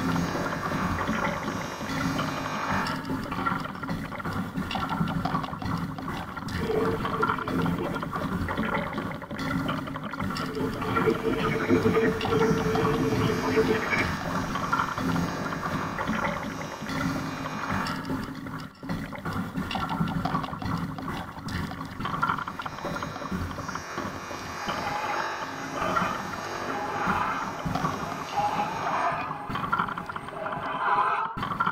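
Experimental noise-art soundtrack: a dense, layered texture of processed sounds with voice-like fragments and held tones that swell in and out.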